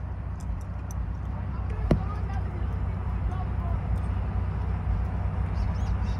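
A car engine idling, heard from inside the cabin as a steady low hum, with one sharp click about two seconds in and faint voices outside.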